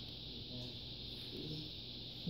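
Quiet room tone: a steady low hum and hiss, with one faint, brief murmur a little past the middle.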